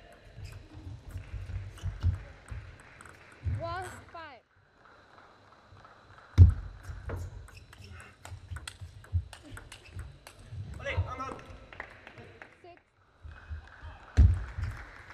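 Table tennis rallies: the plastic ball clicks off the bats and table in quick, irregular strokes, with low thuds of players' feet on the court floor and a heavy thud about six seconds in. A player shouts twice, a few seconds in and again around eleven seconds.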